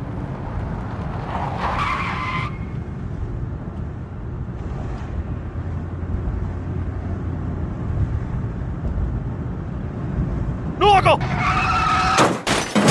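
Pickup truck driving, a steady low engine and road rumble. A brief voice is heard about two seconds in, and a voice slides in pitch just before the end.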